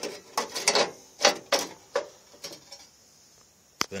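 Steel door-post panel being handled: a run of irregular metallic scrapes and knocks for the first two to three seconds, then quiet and a single sharp click near the end.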